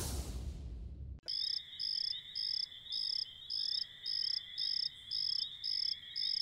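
A whooshing transition sound ends suddenly about a second in. It gives way to a night ambience of crickets chirping: even high chirps about twice a second over a continuous high trill.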